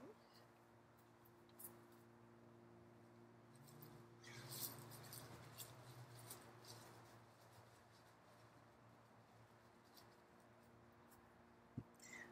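Near silence: the faint steady hum of an electric potter's wheel motor, with faint rustling and small clicks about four seconds in.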